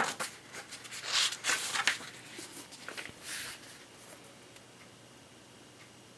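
A hardcover book being handled and opened: a sharp tap, then several bursts of paper rustling as the pages are turned to the signed page, stopping about three and a half seconds in.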